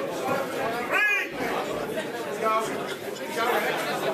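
Ringside crowd of boxing spectators chattering and calling out, with one loud raised voice about a second in.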